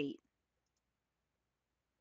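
The end of a narrator's spoken word, then near silence.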